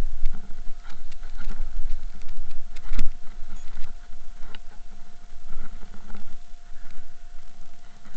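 Handling noise from a camera in a rubber case carried on a walk: irregular rubbing and knocks over a low rumble, with one sharp knock about three seconds in and a faint steady whine.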